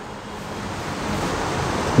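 A steady rushing noise that grows slowly louder.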